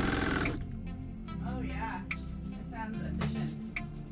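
Rebuilt freshwater diaphragm pump on a boat, with new seals and valves, running with a steady buzz and no water hammer, then cutting off suddenly about half a second in. A faint low hum remains afterwards.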